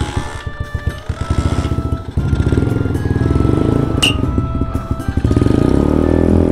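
Small single-cylinder engine of a Chinese Honda Monkey replica running from cold, getting louder about two seconds in. It is being run to warm thick oil that would not drain for an oil change. Background music plays over it.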